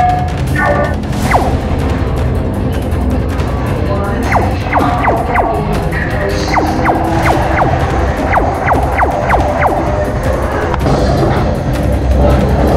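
Laser tag guns firing: a rapid series of short electronic zaps, two or three a second, over loud arena music with a heavy bass.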